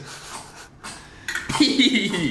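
A shot glass knocked down on a kitchen counter once, about one and a half seconds in, followed at once by a man's voice.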